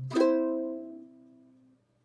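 Closing chord strummed once on a ukulele, ringing out and fading away over about a second and a half.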